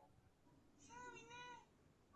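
Near silence, broken a little under a second in by one faint, high-pitched drawn-out call lasting under a second, its pitch rising slightly and falling back.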